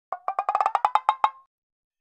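A quick run of about a dozen short pitched percussive taps, closely spaced and rising slightly in pitch, lasting about a second and a half.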